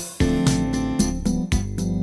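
Instrumental music on an electronic keyboard: a held organ-voice melody and chords over a programmed drum beat.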